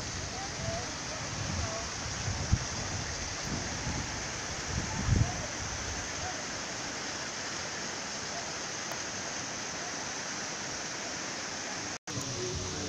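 Steady rush of a waterfall, with a few low knocks in the first five seconds and faint voices.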